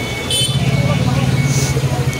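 Road traffic: a brief horn toot about a third of a second in, then a vehicle engine running steadily close by.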